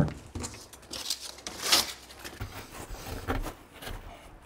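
Scattered light handling noises: rustles, scrapes and soft knocks in a small room, with a longer hissing scrape a little under two seconds in.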